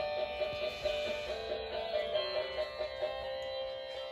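Blue toy electric guitar playing its built-in electronic tune: a string of twangy, plucked-sounding notes that gradually grows quieter.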